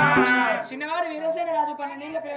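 A storyteller's voice in an Oggu Katha folk performance chanting a loud, drawn-out sung line in Telugu. It begins abruptly with a crisp high stroke and carries on more softly, with a wavering pitch.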